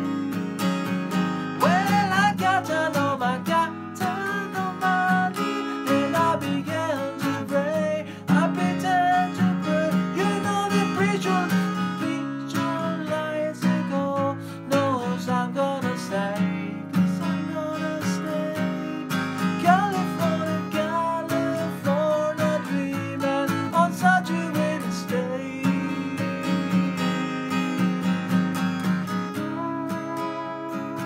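Acoustic guitar strummed steadily in a folk-rock rhythm, with a man's voice singing over it at times, most in the first half.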